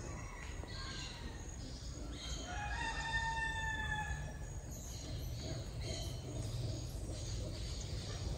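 A rooster crows once, starting about two seconds in and lasting about two seconds: the call rises, holds, then falls slightly. Faint chirping and a steady low background noise of the surroundings lie under it.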